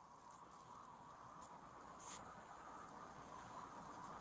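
Near silence: a faint steady background hiss, with two faint brief scuffs about one and a half and two seconds in.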